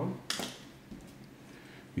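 A man's voice trailing off, a short hiss about a third of a second in, then quiet room tone until he speaks again at the end.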